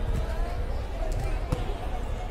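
Light air volleyball being struck by players' hands during a rally: a few short slaps, the sharpest about one and a half seconds in, over background voices.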